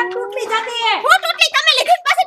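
A woman talking, with a long drawn-out tone in the first second and a half that slowly rises in pitch, then quick speech.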